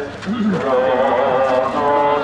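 Voices singing a hymn in long, held notes, with a short break just after the start before the singing picks up again.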